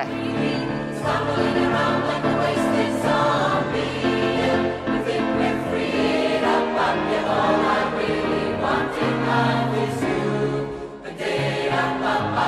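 Mixed choir of women and men singing a pop song, holding sustained chords in several parts; the sound briefly drops about a second before the end.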